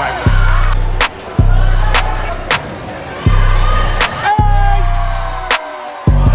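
Background music with a deep bass line and a fast, steady hi-hat beat, with a sliding melodic line about four to five seconds in.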